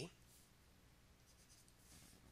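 Near silence with faint scratching of a stylus on a drawing tablet as letters are handwritten.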